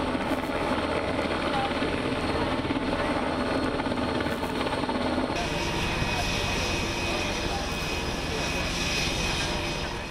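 Seahawk helicopter running on an aircraft carrier's flight deck: a loud, steady rotor and turbine noise. About five seconds in it gives way abruptly to a different steady noise with a thin high whine.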